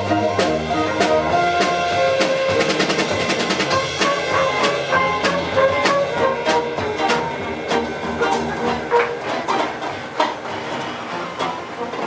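A live band plays: tenor saxophone, trumpet, electric guitar, keyboard and drum kit. Long held notes sound in the first couple of seconds, then drums and guitar keep a steady beat, a little quieter near the end.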